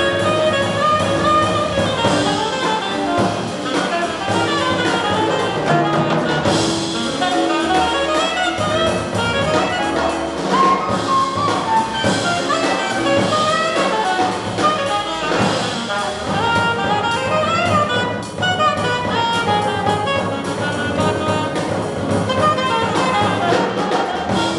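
Live jazz combo: an alto saxophone playing quick melodic lines over drum kit, piano and upright bass, heard from the audience in a theatre.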